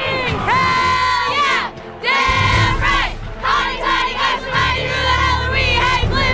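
A group of young women shouting and chanting together in celebration, long held cries that fall away at their ends, with a brief lull about two seconds in.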